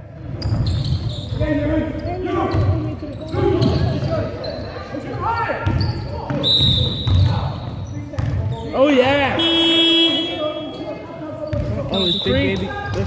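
Basketballs bouncing and players' shoes on a wooden sports-hall floor, with shouting voices echoing in the hall. About nine and a half seconds in a short, steady horn blast sounds, like a scoreboard or substitution horn.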